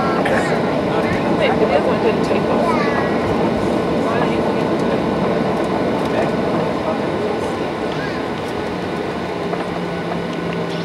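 Cabin noise inside a Boeing 737-800 taxiing, heard from a window seat over the wing: a steady rumble of its CFM56 engines and airframe, with passengers' voices in the cabin. A low steady hum sets in near the end.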